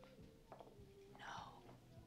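Near silence, with one faint breathy, whisper-like sound a little over a second in, over a low steady background hum.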